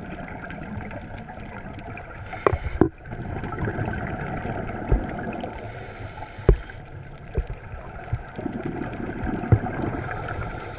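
Underwater sound picked up through a GoPro's waterproof housing: a continuous dull, low rush of a scuba diver's regulator breathing and exhaled bubbles, swelling and easing, with several sharp clicks scattered through it.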